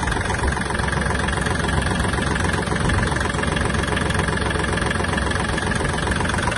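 Kubota L1-185 mini tractor's three-cylinder diesel engine idling steadily, heard close up beside the engine.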